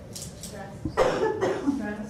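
A short human vocal sound about a second in, cough-like at its sharp start and ending on a falling voiced tone. Before it come faint squeaks of a dry-erase marker writing on a whiteboard.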